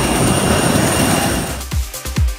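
Steady jet aircraft noise, a loud roar with high-pitched whines. About one and a half seconds in it cuts off, and electronic dance music with a deep, thudding kick drum begins.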